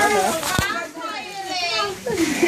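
Children's high voices chattering and calling over each other, with one short thump about half a second in.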